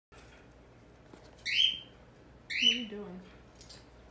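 Cockatiel giving two loud, shrill calls about a second apart.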